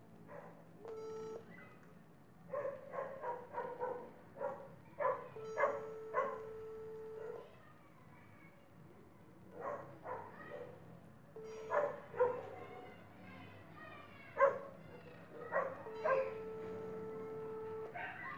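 Phone ringback tone from a smartphone speaker while a call rings out: a steady tone heard four times, twice briefly and twice for about two seconds. Between the tones, a dog barks repeatedly in the background.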